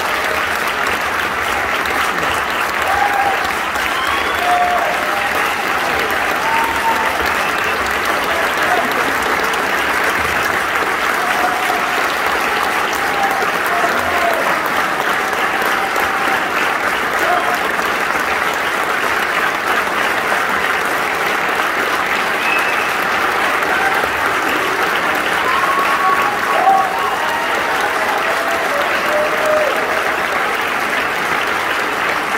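Audience applauding: dense, steady clapping throughout, with scattered cheers and shouts over it, one a little louder near the end.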